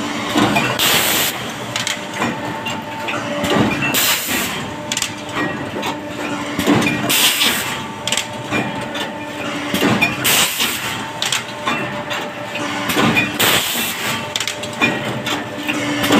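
Automatic paper plate (dona pattal) pressing machines cycling, a short hiss with a knock about every three seconds over a steady mechanical hum.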